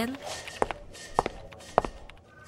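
Footsteps: three sharp, evenly paced steps a little over half a second apart.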